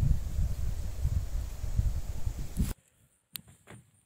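Low, uneven rumble and rustle of wind and handling on a handheld phone's microphone. It stops abruptly about three-quarters of the way through, leaving near silence with a faint click.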